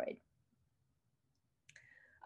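Near silence between spoken words: a word ends right at the start, and a single faint click comes near the end, just before speech resumes.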